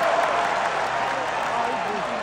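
Large arena crowd cheering and applauding, a wash of many voices that slowly fades.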